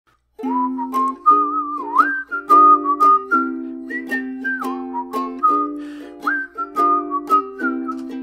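A man whistling a gliding melody over a strummed ukulele, starting about half a second in.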